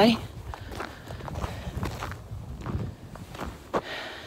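Footsteps crunching on snow-covered ground at a walking pace, uneven and fairly soft.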